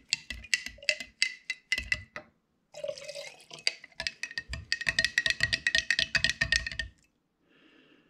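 Quick light clinks and taps on glass jars, the glass ringing with each one, as dye is added to a jar of shellac. They come in short runs at first, then in a fast steady run that stops about a second before the end.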